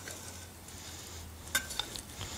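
Knife and fork working a cut steak on a ceramic plate: faint scraping, then a few sharp clicks of metal on the plate about one and a half seconds in.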